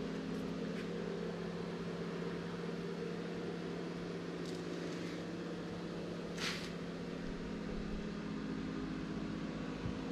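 Steady low mechanical hum of a running appliance or fan, with a brief soft rustle about six and a half seconds in.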